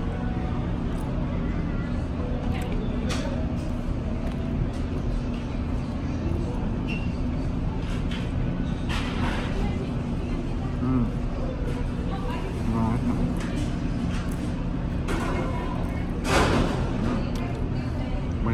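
Steady low hum of a restaurant's room noise, with indistinct voices about nine seconds in and again near the end.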